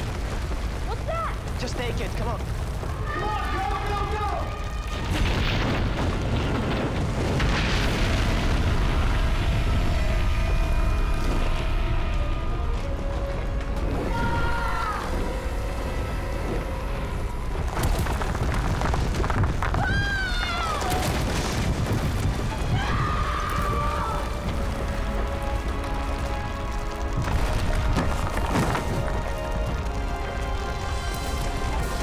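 Film sound design of a volcanic eruption: a continuous deep rumble with repeated booms and crashes, under a dramatic music score. Several cries that rise and fall in pitch break through it.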